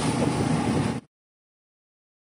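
Steady road and wind noise from a moving vehicle, cutting off abruptly about a second in.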